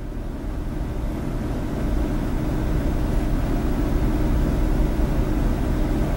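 Steady low background rumble, with no voices, slowly getting a little louder.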